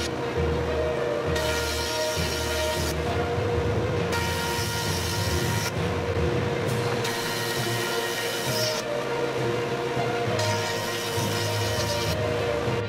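A jointer running under background music, its cutterhead noise swelling each time a board is fed across it, in several passes with short gaps between.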